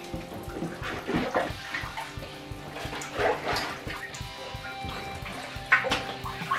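Diet Coke fizzing and sloshing inside a stretched Wubble Bubble ball as it is pressed by hand, with a few short louder squishes, over background music.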